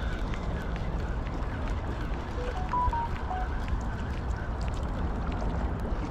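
Steady low rumble of wind buffeting the microphone over lapping river water, with faint scattered ticks. About halfway through, a brief run of short whistled notes steps up and back down in pitch.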